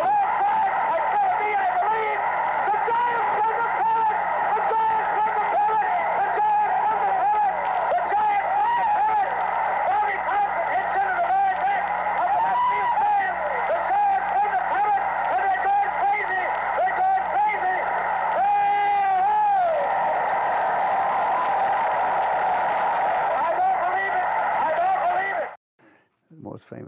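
Archival radio broadcast of a baseball game: a play-by-play announcer shouting excitedly over a cheering crowd, in the thin, narrow sound of an old radio recording with a steady low hum. It cuts off abruptly near the end.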